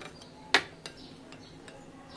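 A metal spoon clinking against a glass bowl while stirring thin curd: one sharp clink about half a second in, then a few fainter ticks.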